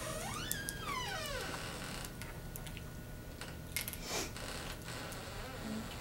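A restrained domestic cat gives one long meow that rises and then falls in pitch. A few faint clicks and a short burst of noise follow about four seconds in.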